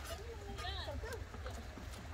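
Women's voices talking faintly in the background, with a few light clicks and a steady low rumble underneath.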